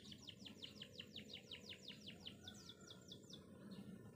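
Faint bird trill: a fast run of about nine short descending notes a second that breaks off a little past halfway, followed by a few scattered notes.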